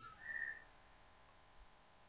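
A short, faint high whistle lasting about a third of a second near the start, followed by near silence.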